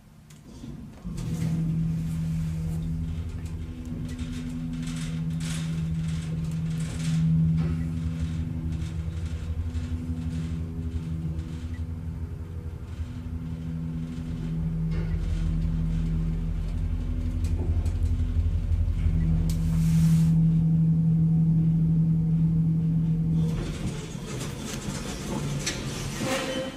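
Elevator car riding up several floors: a steady low motor hum and rumble, starting about a second in, with scattered clicks and a brief rush of noise about two-thirds of the way through.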